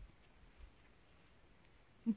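Near silence, with a faint tick at the start and another about half a second later.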